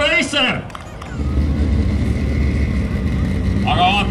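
A voice briefly, then from about a second in a steady low rumble of drag cars idling in the staging lanes at the start line, with a voice again near the end.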